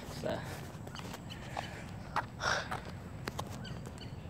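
A short spoken "So", then a steady low rumble with a few soft clicks about a second apart and one brief breathy rush about two and a half seconds in: handling and movement noise from a phone carried while walking.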